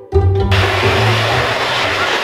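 Plucked-string background music, then about half a second in a loud, steady rush of air from an electric hand dryer starts abruptly and runs on as the music fades out.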